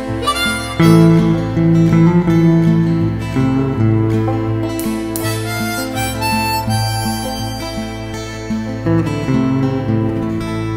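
Instrumental outro of a folk song: harmonica playing a melody line over acoustic guitar, with a bass line underneath.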